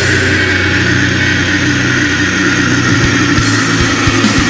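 Heavy metal music: distorted electric guitars and bass holding a long, steady chord.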